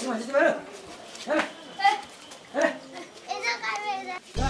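Children's voices: a string of short, high-pitched calls and exclamations, about five separate bursts.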